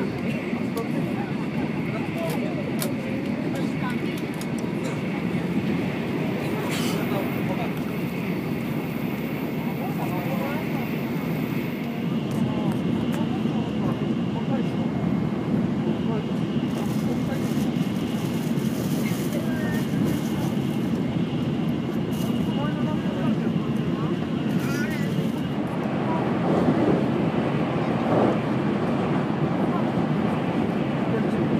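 Cabin noise of a Shinkansen bullet train running at speed: a steady low rumble with a faint high whine, growing a little louder near the end. Indistinct voices of passengers in the carriage sit underneath.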